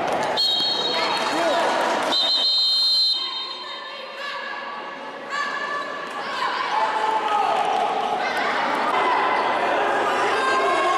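Referee's whistle blown twice, each blast about a second long, in the first three seconds, followed by voices of players and spectators in the gym.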